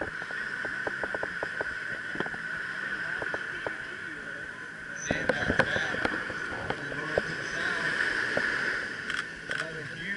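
Beach surf washing ashore, with crowd voices and scattered short clicks; the surf grows louder about halfway through.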